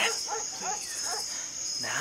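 Crickets trilling steadily in a high, continuous night chorus.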